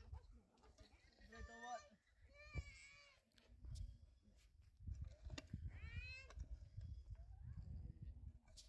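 Faint animal cries, three of them, high and wavering, like young goats bleating, over the low scrape and knocks of a hoe working loose earth.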